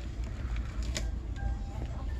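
Store ambience: a steady low rumble with faint background music and a sharp click about a second in.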